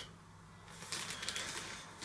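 Plastic specimen bag crinkling and rustling as it is handled, a faint crackly rustle that starts just under a second in.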